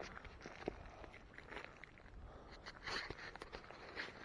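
Faint rustling and soft scattered crunches: footsteps on the forest floor and handling noise from a handheld camera being moved, with a slightly louder patch about three seconds in.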